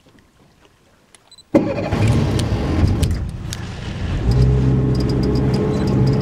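Boat engine starting abruptly about a second and a half in and running, then picking up to a louder, steady drone about four seconds in.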